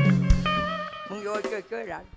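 Live band music accompanying a nang talung shadow-puppet show: held guitar notes with a single low drum thump about a third of a second in, under the puppeteer's speaking voice.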